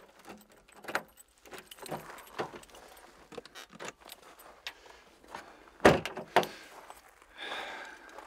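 Keys jangling and a backpack rustling, then the Toyota Land Cruiser's door shut with a sharp knock about six seconds in, followed by a second, smaller knock.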